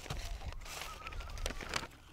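Paper rustling and crinkling as it is folded and creased by hand, with a few short crackles around one and a half seconds in.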